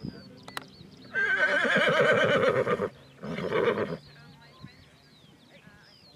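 A horse whinnying twice: one long, quavering neigh, then a shorter one about a second later.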